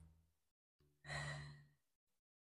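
A woman's short, breathy exhale about a second in, made with the effort of rolling back and up; otherwise near silence.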